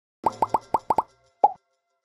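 Logo-animation sound effect: seven short cartoon pops, each bending quickly upward in pitch. Six come in quick succession, then a last one about half a second later.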